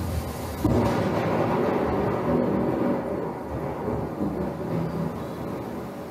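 Deep rumble from a documentary soundtrack, swelling about half a second in and slowly dying away, with a faint steady hum.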